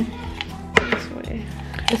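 Metal spoon scraping and tapping against the jar and the rim of a plastic blender jar while scooping thick mole paste: a few sharp clicks, the loudest under a second in.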